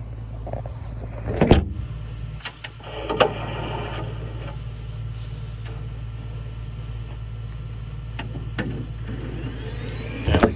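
Epson P4900 inkjet printer running during a print, a steady low hum, with a loud knock and clatter about a second and a half in and a smaller knock a couple of seconds later as the phone is handled and set down.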